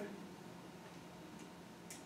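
Quiet room tone with a steady low hum, broken by a faint click about one and a half seconds in and a sharper light click near the end.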